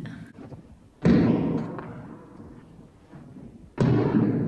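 Two loud bangs of a tennis ball thrown hard against the walls and floor of a large hall, about three seconds apart. Each bang echoes and dies away over about a second.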